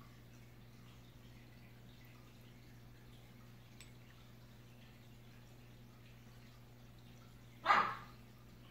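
A dog barks once, short and loud, near the end, over a steady low electrical hum.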